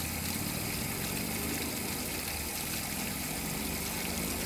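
Garden-hose water running steadily into a plastic ice-cube-tray water dish as the automatic waterer fills it extra long, letting it overflow. A steady rush with a faint low drone underneath.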